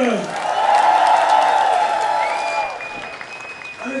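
Concert audience applauding, loudest in the first couple of seconds and then dying down. A high steady tone sounds through the second half.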